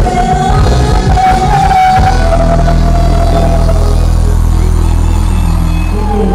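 Live band music with a woman's lead vocal holding one long note for the first two seconds or so, after which the beat drops out and the band holds a low sustained chord.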